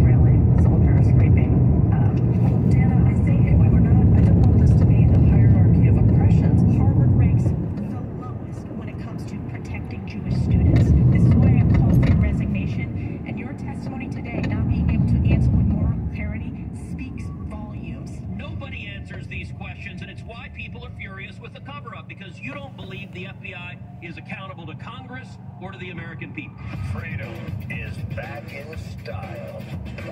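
Car radio playing in the cabin of a moving car, over a low road rumble that swells and drops off. The rumble fades from about halfway through as the car slows to a stop in traffic.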